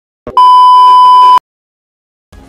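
A loud, steady electronic beep tone lasting about a second, starting just after a brief sound and cutting off abruptly.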